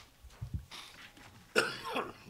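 A person coughing once, sudden and loud, about one and a half seconds in, in a quiet meeting room.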